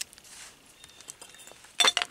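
Old glass bottles clinking together: a quick cluster of sharp clinks near the end as a dug-up bottle is set down among other bottles, with a few faint ticks of glass before it.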